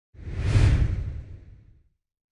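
Intro logo whoosh sound effect with a deep low rumble under it, swelling about half a second in and fading away over the next second.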